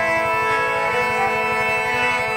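Harmonium playing, its reeds holding a steady sustained chord over a fast, even low pulse.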